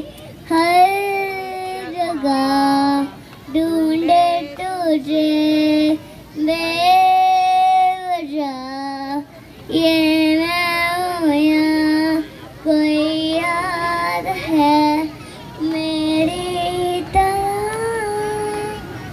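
A young boy singing solo into a microphone, amplified through a stage PA loudspeaker, in short phrases with gliding pitch and a long held note near the middle.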